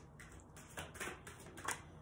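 A deck of oracle cards being shuffled by hand: a few soft, short rustles and slaps of the cards against each other.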